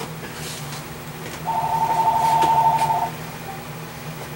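A telephone ringing: one trilling two-tone ring lasting about a second and a half, starting about a second and a half in, over a steady low hum.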